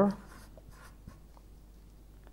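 Felt-tip marker writing on paper in short, faint strokes, with a light tick about a second in.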